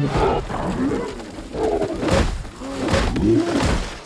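Animated film dragon vocalizations: a string of short pitched calls that rise and fall, with a rushing noise about halfway through.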